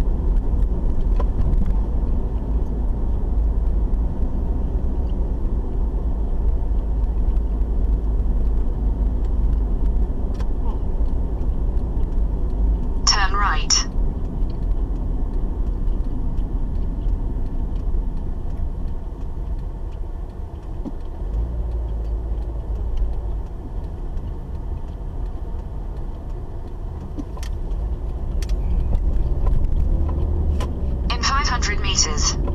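Steady low road and engine rumble of a moving car, heard from inside the cabin. About halfway through there is a short warbling electronic sound.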